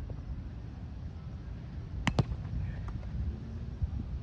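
Two sharp slaps a split second apart about halfway through, from a roundnet (Spikeball) ball being struck in play, with a faint tick or two later. A steady low rumble runs underneath.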